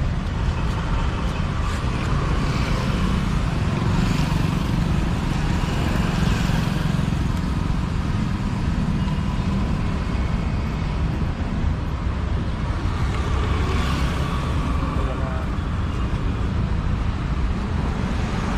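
Steady roadside traffic rumble from passing vehicles, with faint voices of people nearby.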